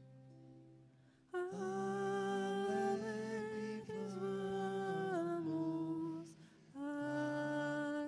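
Soft keyboard notes, then from about a second in a voice humming a slow melody in long held notes over keyboard accompaniment: the musical opening of the sung responsorial psalm.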